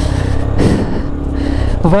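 Hero XPulse 200 motorcycle's single-cylinder engine running steadily while riding, with wind rushing over the microphone and a gust about half a second in.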